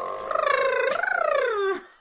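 A person's voice imitating a little vehicle: a held tone, then a rough, wavering tone that rises and falls in pitch and fades out near the end.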